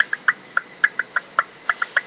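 Solo beatboxing: a fast run of short, sharp mouth clicks and pops, about five or six a second, in an uneven rhythm.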